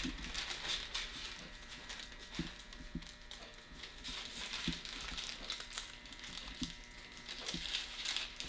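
Faint rustling and crinkling of a thin tattoo stencil transfer sheet as it is pressed onto the skin and peeled back, with a few soft taps.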